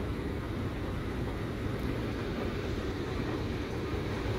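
Escalator running, heard while riding it: a steady low rumble with no breaks.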